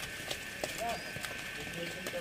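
Cattle moving about a muddy pen, their hooves making faint scattered knocks, with short distant calls from men's voices in the first second.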